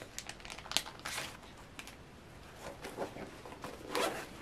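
Crinkling and rustling of a CEFALY electrode pouch as it is handled, in scattered short crackles with a few sharper ticks, and a louder rustle right at the end.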